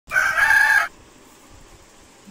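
A rooster crowing: one loud call, under a second long, that cuts off suddenly.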